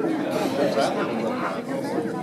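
Several people chattering at once in a large hall, voices overlapping without clear words.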